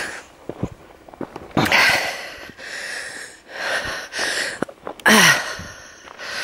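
A walker's heavy breathing while climbing a stony hillside track: three loud breaths a couple of seconds apart, with light footsteps on the gravel between them.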